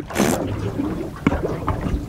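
Steady low rumble of wind and sea around a small boat, with a short hiss near the start and a sharp knock just over a second in.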